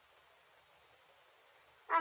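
Near silence for most of the stretch, then near the end a high-pitched voice begins calling out the next number of the count.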